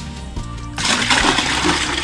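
Water poured from a small well bucket into a plastic bucket: a loud splashing gush that starts just under a second in and runs on, over background music.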